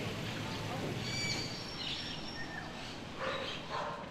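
Outdoor ambience: a steady background hiss with a few short bird chirps, and faint voices near the end.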